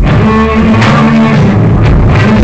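A live rock band playing loud, led by electric guitar over bass and drums, with a sharp hit about once a second.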